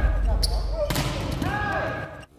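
Live sound of an indoor volleyball rally: the ball is struck with two sharp knocks, about half a second and a second in, while players call out on court.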